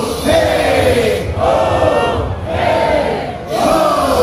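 Concert crowd chanting in unison, loud repeated shouted phrases about once a second, each one falling in pitch.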